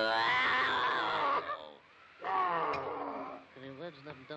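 Two cartoon lion roars, voiced: the first rises in pitch and runs over a second, and after a short pause a second one falls away. A short click comes during the second roar.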